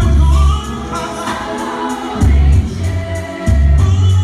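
Live R&B slow jam: a male singer's voice over the band, with loud, deep bass notes at the start, about two seconds in and again near the end.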